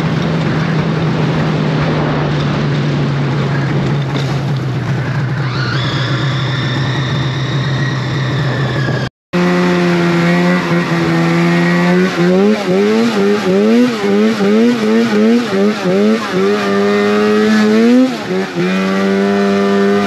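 Snowmobile engine running at a steady pitch under wind noise. After a short break about nine seconds in, it revs up and down rapidly and repeatedly as the sled climbs a snow slope.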